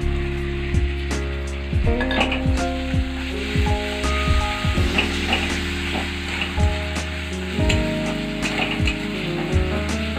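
Onion-tomato masala with freshly added ginger garlic paste sizzling in oil in a steel kadai, while a metal spatula stirs it, scraping and clicking against the pan now and then. Background music plays over it.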